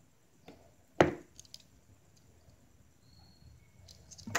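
Handling noise close to the microphone: a soft knock, then a sharp knock about a second in, followed by a few faint clicks, with quiet room tone between.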